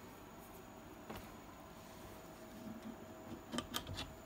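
Faint handling sounds: a light click about a second in and a few small clicks and ticks near the end as hands work the blue plastic port caps on a turbocharger.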